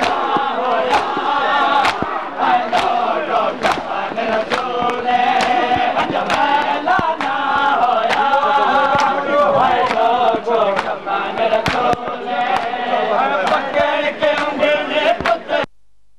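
A crowd of men chanting a noha, a Shia lament, together, with repeated sharp slaps of hands beating on chests (matam). It cuts off suddenly near the end.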